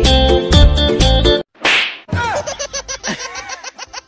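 Guitar background music that cuts off abruptly about a second and a half in, followed by a half-second burst of noise and then a fast run of clicks, about six a second, laced with short gliding squeaky tones: comic sound effects edited into the track.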